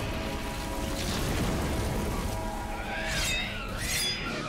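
Cartoon score music with held tones under a low rumbling sound effect. Near the end come a few gliding whoosh effects that rise and fall.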